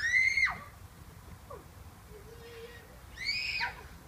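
Two short, high-pitched squealing calls, one at the start and one about three seconds in, each rising briefly and then sliding down in pitch.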